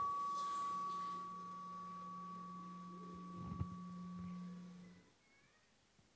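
Two steady, held tones, a high one fading away and a low hum joining it about a second in, with one soft knock in the middle. Both stop about five seconds in, leaving near silence.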